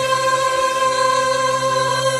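A girls' choir singing, holding one long steady note together.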